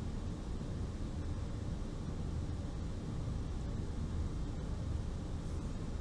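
Steady low hum and hiss of room tone, with no distinct sound events standing out.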